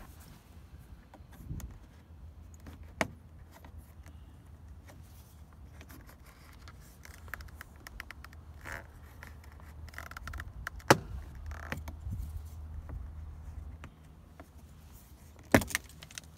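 A plastic trim tool prying a trim strip off a BMW E46 door panel: scattered clicks and scrapes, with sharp snaps as the strip's clips pop loose, the loudest about eleven seconds in and another near the end, over a steady low hum.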